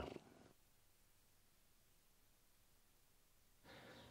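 Near silence: the very low noise floor of a RØDE Wireless Go recorded into a Fuji X-T3 at its lowest level, with a cat purring faintly. Near the end a slightly louder hiss of room tone comes in.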